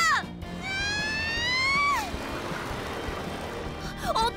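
A cartoon boy's long held scream, climbing slowly in pitch and then dropping and breaking off about two seconds in, over background music.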